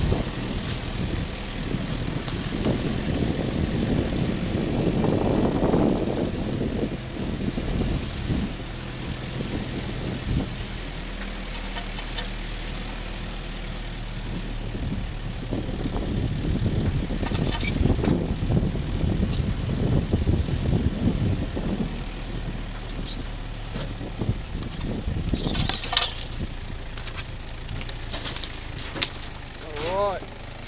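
A vehicle driving slowly over rough bush ground: a steady rumble of engine, tyres and wind on the microphone, with jolts and rattles from the uneven track.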